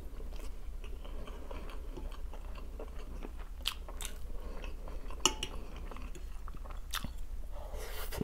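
Close-miked chewing of a mouthful of homemade meat cutlet, with wet mouth sounds throughout and a few sharp clicks scattered through the middle and later part.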